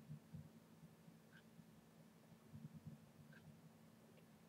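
Near silence: faint room tone with a low hum and two faint short chirps about two seconds apart.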